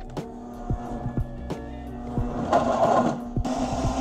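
Background music with a steady beat; about two and a half seconds in, an enclosed countertop blender starts up and by the end runs as a steady loud whir, crushing ice and frozen fruit into a thick smoothie.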